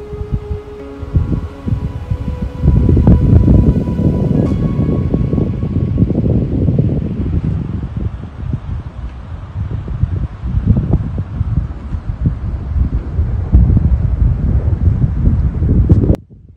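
Wind buffeting the camera microphone in loud, irregular gusts of low rumble. Soft background music fades out under it over the first few seconds. The sound cuts off abruptly at the end.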